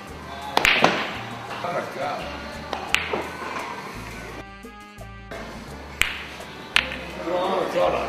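Background music with four sharp, unevenly spaced clicks of sinuca balls striking one another. The loudest clicks come just under a second in and about six seconds in.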